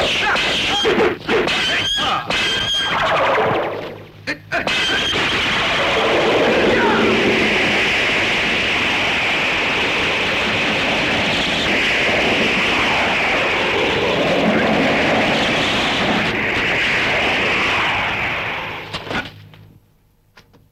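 Kung fu film fight sound effects: a quick flurry of sharp blows and weapon strikes, then a long, loud, unbroken noise that runs for about fourteen seconds and stops near the end.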